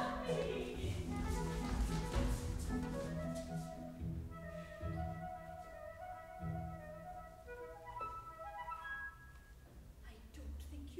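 Chamber orchestra playing without voices: woodwind lines over low held notes, growing quieter near the end.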